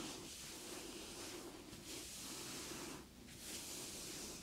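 Faint rustle of hands stroking firmly down cloth trousers over the shin and calf, in repeated strokes that come and go every second or so, over a low hiss.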